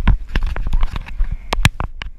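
A hand grabbing and adjusting a GoPro camera, with a quick, uneven series of clicks and knocks as the fingers touch and rub the housing. The loudest knocks come about one and a half seconds in.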